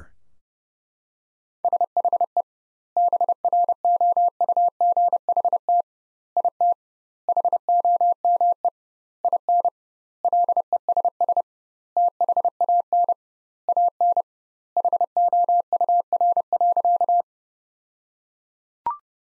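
Morse code sent as a single steady beeping tone at 30 words per minute, with double word spacing. It spells out "She brought it home in less than an hour" in nine groups of dots and dashes, starting about a second and a half in.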